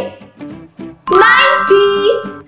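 A bright chime sound effect, several ringing tones at once, comes in about halfway through and rings for about a second. It is the cue for a new number tile appearing on the counting board.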